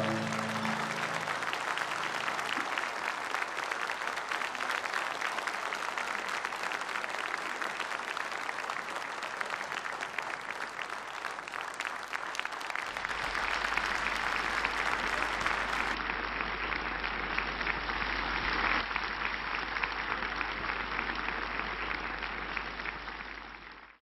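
A large audience applauding steadily as the band's last note dies away, the clapping fading out at the very end.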